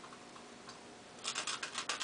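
Utility knife blade cutting into a foam pool noodle. There is a quick run of small, sharp clicks and crackles starting a little over a second in.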